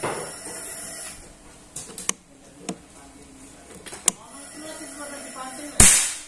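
A Predator Mahameru full-CNC bullpup PCP air rifle fires a single shot near the end, a sharp crack that is the loudest sound here. A couple of faint clicks come before it.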